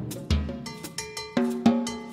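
Ludwig Element drum kit played with sticks: a run of separate strikes on tuned drums with bass drum thuds underneath, about three to four hits a second, each ringing briefly before the next.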